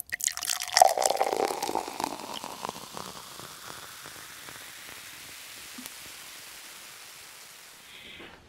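Intro sound effect: a burst of many rapid small clicks and crackles with a brief tone about a second in, thinning out over about three seconds and fading into a steady low hiss.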